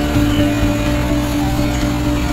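Background music of long, sustained held notes, the chord changing just after the start.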